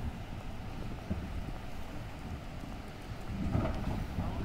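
Wind buffeting a handheld camera's microphone outdoors: a steady, uneven low rumble.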